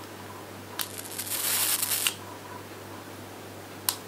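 Electric arc candle lighter switched on, its arc crackling for over a second, with a sharp click near the end.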